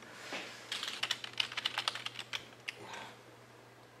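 Rapid typing on a computer keyboard: a quick flurry of key clicks lasting about two seconds, starting a little way in.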